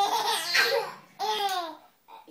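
A baby laughing in two loud bursts: a long one lasting about a second, then a shorter one just after.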